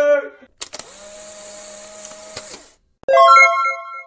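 A short edited transition: a click, then about two seconds of steady hiss with a held hum, then a bright chime-like intro sting of several ringing tones that fades out, marking the channel's logo card.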